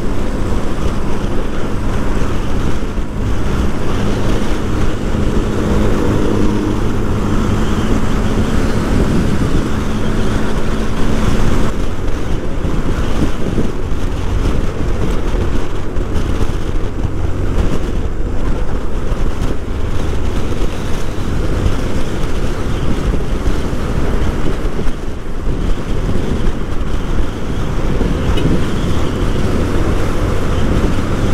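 Wind rushing over the camera microphone on a motorcycle at highway speed, over the bike's steady engine drone. A steady low hum is heard for the first twelve seconds or so, then drops out.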